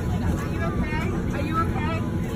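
Indistinct voices over the steady low rumble of a passenger airliner's cabin.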